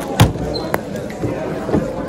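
A 3x3 speedcube set down on the mat and hands slapping the Speed Stacks timer pads to stop it at the end of a solve: a sharp thump just after the start, then a lighter knock about half a second later, over background chatter.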